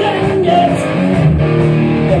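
Live rock band playing: a male singer over electric guitar and drums.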